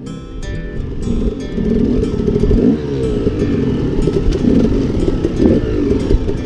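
KTM 300 two-stroke dirt bike engine revving up and down as the bike picks its way over a rocky trail, fading in over the first second, then loud with repeated rises and falls in pitch.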